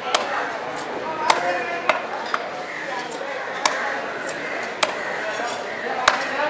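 Large cleaver-like knife chopping a barracuda into steaks on a wooden log block: about six sharp chops at uneven intervals, a second or so apart, over a background murmur of voices.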